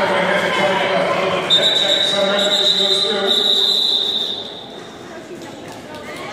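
A referee's whistle blown for about two and a half seconds, starting about a second and a half in, over the din of a roller derby bout in a large hall: voices and skating on the track. The din drops a little near the end.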